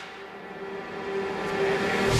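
A rush of noise with one steady held tone, swelling steadily louder and building straight into electronic dance music.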